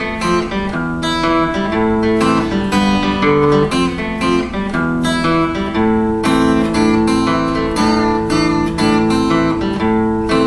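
Acoustic guitar played fingerstyle: a steady run of picked bass notes under higher melody notes.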